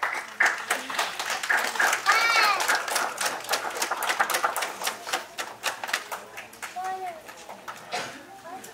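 Small group applauding by hand, with a voice or two calling out over the clapping. The clapping is loudest a couple of seconds in and thins out before the end.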